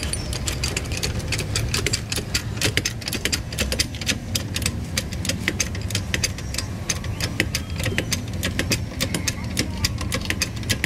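Hydraulic floor jack being pumped to lift a car, with rapid, irregular metal clicking several times a second over a steady low engine rumble.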